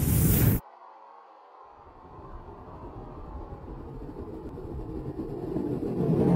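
Sound design for an animated logo intro: a loud hit that ends about half a second in, then a low rumbling riser that swells steadily louder toward the end.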